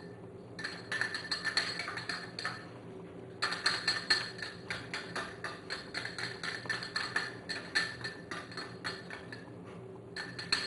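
A metal whisk and spoon tapping and clinking rapidly against a glass mixing bowl as corn flour is added to sugar. The taps come in two runs, with a short break about three seconds in.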